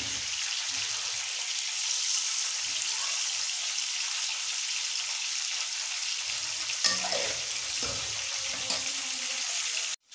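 Beef koftas sizzling steadily in hot oil and masala in an aluminium karahi, with one brief knock about seven seconds in.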